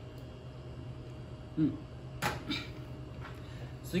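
Low steady hum of a quiet room. After a sip of a cocktail comes a man's short 'mm' of approval, then about two seconds in a brief sharp click.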